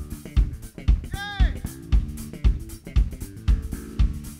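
Live rock band playing an instrumental passage: drum kit with a steady kick and snare at about two beats a second, under electric guitar and bass guitar. A short high note bends up and down about a second in.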